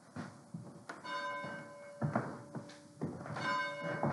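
A church bell tolling: struck about a second in and again a little over two seconds later, each stroke ringing on and slowly dying away. Dull thuds fall between the strokes.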